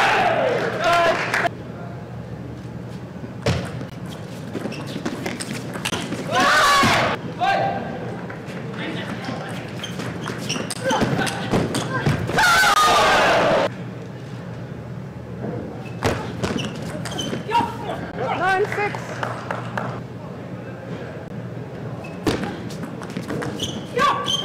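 Table tennis rallies: the plastic ball clicking off rubber paddles and the table in quick exchanges, with players' loud shouts after points are won, about six seconds in and again about twelve seconds in, over a steady low hum in a large hall.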